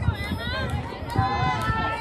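Girls' voices talking and calling out over one another, several at once and close by.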